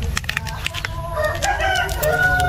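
A rooster crowing: a long call that starts about a second in, climbs in pitch and then holds. A few sharp clicks come just before it.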